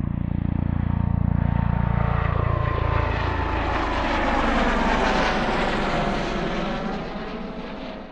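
A propeller airplane flying past: its engine drone swells in, drops in pitch as it passes, then fades away near the end.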